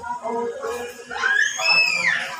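Voices talking in a room, then a loud, high-pitched shriek from a voice a little past a second in, rising and then falling in pitch and lasting under a second.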